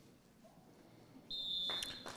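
Near silence, then about a second and a half in a referee's whistle gives one short, steady blast of about half a second, ending the minute of silence; a brief burst of noise follows as it stops.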